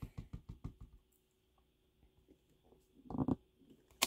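Faint handling of a clear acrylic stamp block on card stock: light taps fading out in the first second, a short soft thump a little after three seconds as a stamp is pressed down, and a sharp click at the end.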